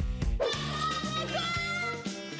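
A woman singing one long, very high note at full voice, close to a scream, over background music; the note steps up a little about halfway through.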